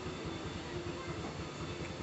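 Steady background noise, a low rumble and hiss, with a faint steady hum through the middle.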